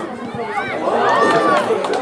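Several high-pitched young voices shouting and calling over one another outdoors during a football match, at their loudest about a second in.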